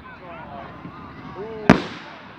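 An aerial firework shell bursting with one sharp bang near the end, over people talking in the background.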